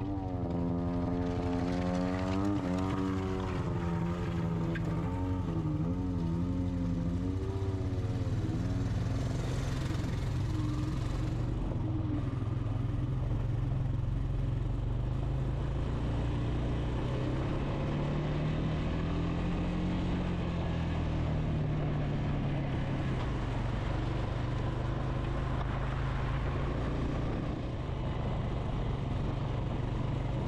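Honda ATV engine running while it is ridden, its pitch rising and falling with the throttle over the first several seconds, then holding steadier, with a brief rise about twenty seconds in.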